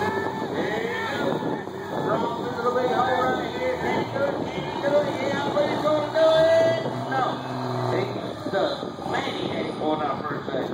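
Onlookers' voices and shouts over a pickup truck's engine running hard under load as it ploughs through a mud bog pit.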